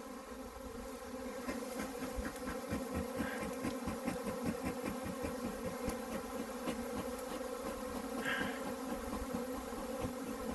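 Honeybee swarm flying: a steady hum of many bees in the air as the swarm, failed to be knocked down, regathers on its high branch.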